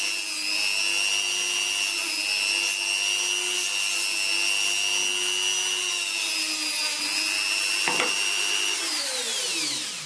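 Dremel rotary tool with a sanding attachment running at a steady high whine, sanding away wood on a ukulele-banjo neck. About nine seconds in it is switched off and its pitch falls as it spins down.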